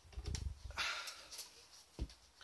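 Handling noise as a cricket bat is moved and held up to be measured: a low rumble, a brief rustling scrape a little under a second in, a few light clicks and a short knock at the end.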